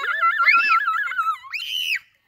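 A young child's high-pitched excited squeal, held with a rapid wobble in pitch and arching higher twice before cutting off sharply.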